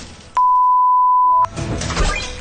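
A steady electronic beep at one pitch, starting about a third of a second in, lasting about a second and cutting off suddenly: a censor-style bleep tone.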